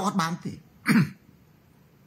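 A man's voice: a few quick spoken syllables, then one more short, sharp vocal sound just under a second in, followed by a pause.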